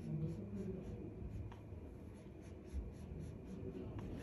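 ADST DS2 flat iron and twin brush being drawn down through a section of bleached hair during straightening-perm iron work. The brush bristles and iron plates on the hair give a run of short, soft scratchy rustling strokes.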